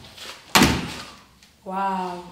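An interior door pushed shut, closing with a single loud bang about half a second in.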